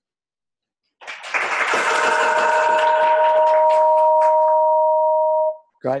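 A loud electronic sound on the call audio: a rushing noise with two steady tones held together over it for about four seconds, cutting off abruptly.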